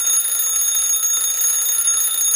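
Loud, steady, high-pitched alarm-like ringing: one unbroken shrill tone with overtones and a slight rattling texture.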